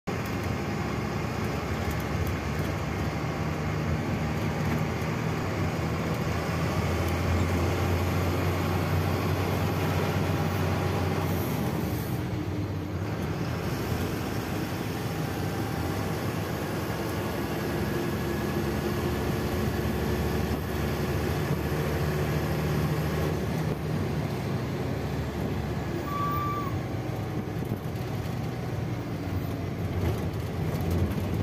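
Engine and road noise heard from inside the cab of a heavy vehicle driving through town. The steady engine note climbs about a quarter of the way in and drops back around the middle, and a brief short tone sounds near the end.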